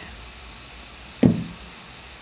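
A single dull knock a little over a second in, dying away quickly, over faint room tone.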